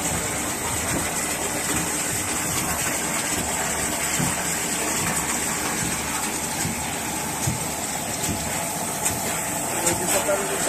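A waste-water treatment machine running, with water pouring from a row of outlet pipes into a trough in a steady, even rush.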